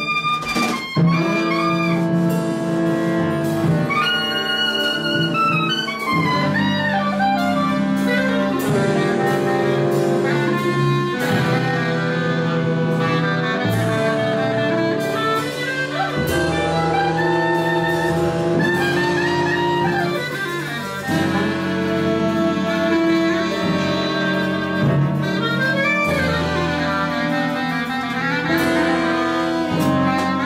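Jazz saxophone ensemble playing live, several horns holding layered, sustained lines together, with sharp percussive hits underneath. Some phrases slide downward in pitch.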